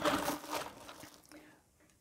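Plastic packaging wrap crinkling and rustling as the collection tubes are handled, dying away about a second in.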